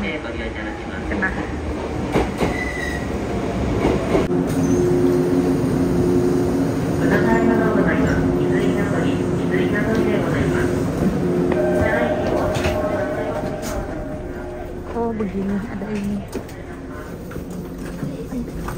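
Electric passenger train pulling into a station platform and stopping, with a running rumble and squealing tones from the wheels and brakes that rise through the middle and ease off near the end.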